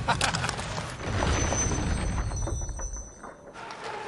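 Ice hockey rink sound at a faceoff: a few sharp stick clacks as the puck is dropped, then a steady hubbub of the arena crowd and play on the ice that falls away near the end.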